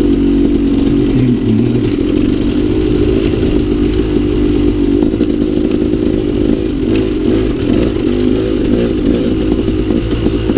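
2016 KTM 200 XC-W single-cylinder two-stroke dirt bike engine running under way through its FMF Turbine Core silencer, revs wavering up and down slightly with the throttle.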